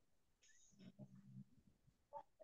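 Near silence, with a faint low sound about a second in.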